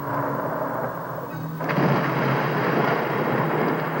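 Thunder rumbling in a storm, a louder, fuller roll coming in a little under halfway through.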